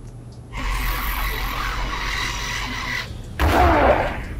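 Cartoon action sound effects: a hissing rush with a low rumble under it for about two and a half seconds, then, near the end, a louder burst whose pitch falls steeply.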